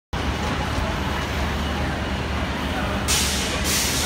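Street traffic with a steady low rumble of idling bus and vehicle engines, broken near the end by two loud bursts of hissing.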